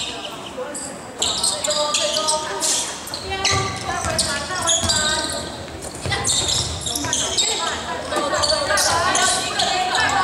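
Basketball game in a gym: the ball is bounced on the hardwood floor among short sharp court noises, with voices calling out and echoing around a large hall.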